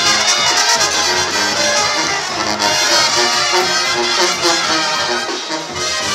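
Brass band music, trumpets playing over a repeating bass line.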